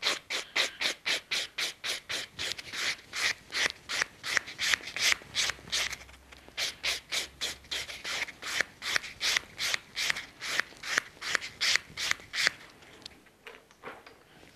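White buffing block rubbed quickly back and forth over an acrylic nail, about four strokes a second, smoothing the surface. The strokes stop about a second and a half before the end.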